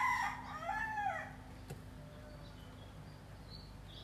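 A long crowing call, rising then falling in pitch, fading out about a second in. After it there is low background noise with a few faint high chirps.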